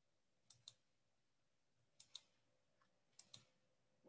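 Faint computer mouse clicks in three quick pairs, like double-clicks, with near silence between them.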